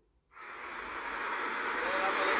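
A steady hiss of background noise fades in after a brief moment of silence and grows louder, as a street video starts playing through a phone's speaker.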